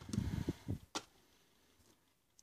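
Glass perfume bottles and a cardboard perfume box being picked up and moved on a table: a few soft bumps and rustles, then one sharp click about a second in.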